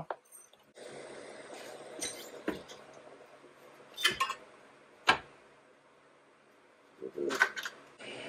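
A few sharp metal clinks and knocks, four spread over several seconds over a faint hiss, from a wrench and the front differential housing being worked loose from its tight mounting under the truck.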